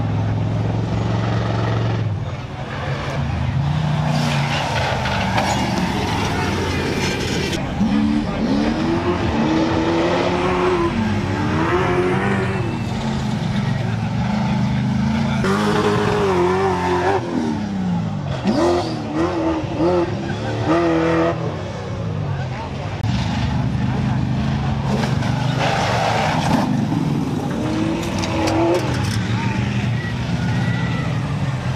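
Off-road prerunner race trucks running hard on a dirt track, their engines revving up and down in repeated rising and falling surges as they take turns and jumps.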